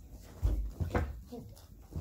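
Two dull low bumps about half a second apart, handling or knocking, then a child's voice saying "here".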